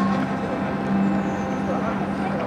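A steady low-pitched hum with scattered voices of people around it.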